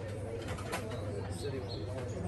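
A bird calling with a low, wavering note over outdoor background noise and faint voices.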